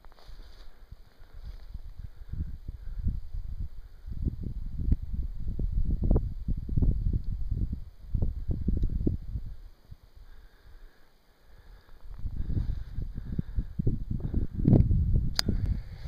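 Wind buffeting the camera's microphone in uneven gusts, a low rumble that eases off briefly about two-thirds of the way through, with a sharp click near the end.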